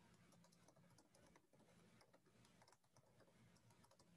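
Faint computer keyboard typing: soft, irregular key clicks over a low steady hum.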